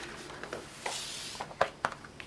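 A paper catalogue page being turned by hand: a soft swish of the sheet about halfway through, then two sharp taps near the end.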